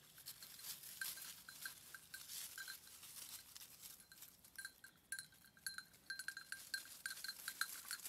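A small bell on a goat's collar tinkling irregularly as the goats graze and move, more often in the second half, with dry leaves crackling under their hooves and mouths.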